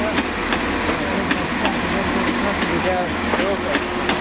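A Transport for Wales Class 197 diesel multiple unit moving slowly past, its engines running with a low steady hum and short clicks from the wheels on the track, with people's voices talking over it.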